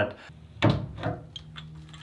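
A single sharp knock, then a few light clicks over a low steady hum, as a metal pipe wrench is set against an old galvanized water pipe.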